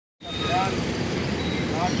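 Steady low rumble of road traffic. A man's voice comes in briefly over it, with speech starting near the end.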